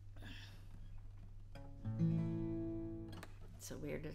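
Steel-string acoustic guitar: a single plucked note, then a strummed chord about two seconds in that rings for roughly a second and is cut off.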